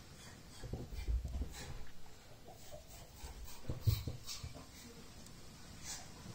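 Breath blown in puffs onto a glowing charred punk wood ember in a nest of wood shavings to coax it into flame, in two spells: about a second in and again around four seconds, with a few small crackles.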